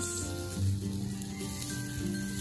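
Marinated pork belly sizzling on a wire grill over charcoal as the slices are turned with tongs, a steady hiss under quiet background music.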